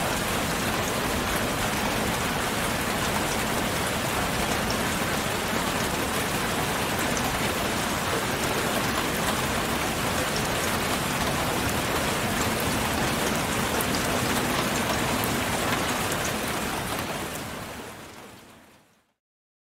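A steady, even hiss of noise that fades out near the end.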